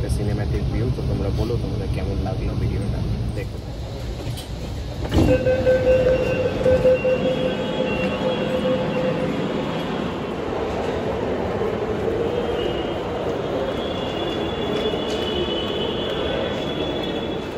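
Metro train running, heard from inside the carriage as a steady low rumble. About five seconds in it cuts to a station with a steady hum and the indistinct voices of passengers.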